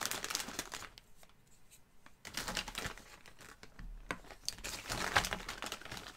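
Plastic packaging crinkling and rustling as it is handled and opened, in two spells with a lull about a second in.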